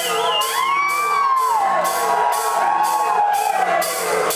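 Live experimental vocal performance: several voices holding long sung notes that slide up and down in pitch, over a steady beat of sharp, high percussive ticks about twice a second.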